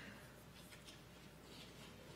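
Near silence: room tone with a steady low hum and a few faint rustles.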